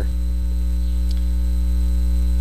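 Loud, steady electrical mains hum in the audio feed: a low, unchanging buzz with a ladder of higher overtones.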